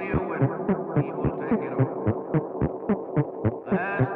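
Text-sound composition made from processed, layered recordings of speech, chopped into a steady throbbing pulse of about four beats a second over a dense hum. A brighter, higher layer comes in near the end.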